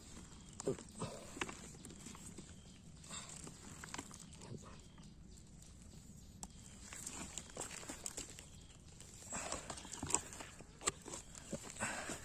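Light rustling and scattered small clicks of dry leaf litter, twigs and plant stalks as a wild mushroom is picked and handled by hand; the rustling grows busier about nine seconds in.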